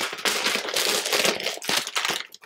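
Shiny gift wrapping paper crinkling and tearing continuously as a wrapped book is pulled open by hand.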